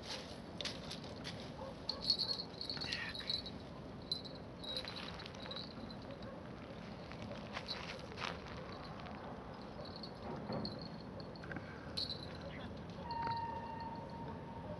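Quiet riverbank ambience: a faint steady hiss with scattered short high chirps and a few sharp clicks, and a steady whistle-like tone starting about a second before the end.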